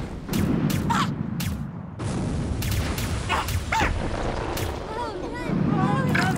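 Film-style sound effects with the music taken out: a dense low rumble with booms and sharp hits, and a few short voice-like squeals about a second in and again past the middle.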